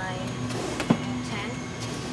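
Flat-packed cardboard boxes being handled and pulled from a store shelf, with one sharp knock about a second in, over a steady low hum.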